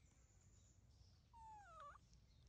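Baby macaque giving one faint, short call about one and a half seconds in; its pitch slides down, then rises sharply at the end.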